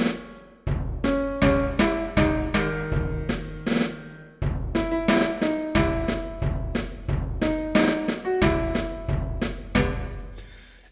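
Software playback of a percussion arrangement: a pitched, high tom-like drum (a 'drum bell') plays the sung melody line stroke by stroke over a snare and a kick drum, at about two strikes a second.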